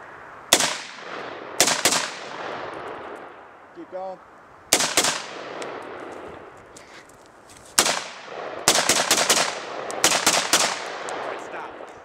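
M4 carbine firing .223 rounds: a few spaced single shots, then rapid strings of shots near the end, each crack followed by a rolling echo.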